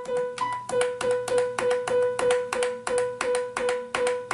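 Piano sound from a Roland U-20 synthesizer, triggered over a MIDI lead by a Casio digital horn. The same note repeats about four times a second, each note starting with the click of the horn's key. This shows that the horn's MIDI output is working.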